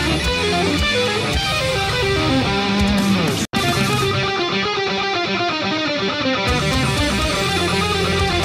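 Electric guitar playing a fast run of single notes from a neo-classical metal riff, at about 80% of full speed. The sound cuts out for an instant about three and a half seconds in.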